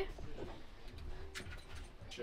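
A few faint knocks and clicks of someone moving about and handling a door inside a train carriage, with two sharper clicks in the second half.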